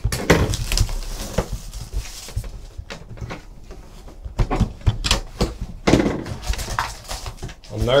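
A shrink-wrapped cardboard trading-card box being cut open and unpacked: scattered short clicks and knocks of the cardboard box and lid, with crinkling rustles of plastic wrap and foil packs being handled.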